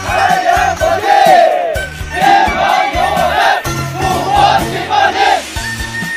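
A group of soldiers shouting a greeting in unison, in three long phrases, over background music.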